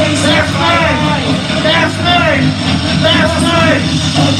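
Live rock band playing: a steady low guitar and bass drone under a repeating rising-and-falling wailing line.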